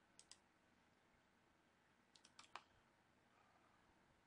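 Near silence broken by a few faint computer mouse clicks: two just after the start, then a quick run of about four a little past two seconds in.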